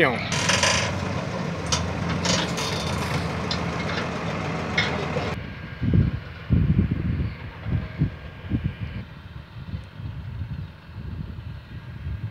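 Tractor engine running as its mounted hydraulic crane lifts a bulk bag of corn onto a truck, with occasional knocks from the crane. About five seconds in this breaks off abruptly into quieter, uneven low rumbling.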